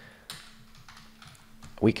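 Several faint keystrokes on a computer keyboard as a short line of code is typed.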